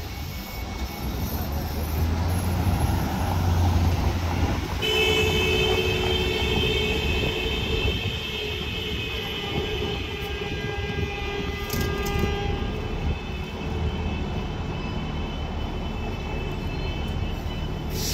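Downtown street traffic: a low vehicle rumble swells over the first few seconds, then a steady high-pitched whine sets in about five seconds in and fades out around thirteen seconds.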